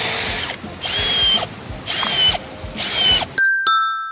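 Cordless drill run in four short trigger bursts, its motor whine dropping in pitch as each burst is released, while a tent platform is being built. Near the end two short chiming tones ring.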